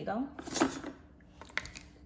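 Hard plastic clicks and knocks as a blue plastic pusher tool shoves a small baking pan through the slot of a toy oven, with one knock about half a second in and a pair of clicks near the end.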